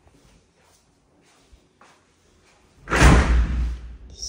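A white interior door being opened by its lever handle: a loud rush of noise about a second long near the end, after a few faint ticks.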